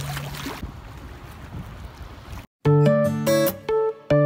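Water washing and splashing among shoreline rocks, fading after about half a second to a low wash. After a brief dropout, acoustic guitar music with plucked notes starts about two and a half seconds in and is the loudest sound.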